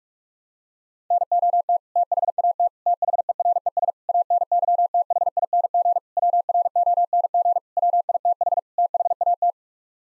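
Morse code sent at 45 words per minute: a single steady tone keyed on and off in rapid dots and dashes, starting about a second in and stopping shortly before the end. It spells the phrase "not that there's anything wrong with that".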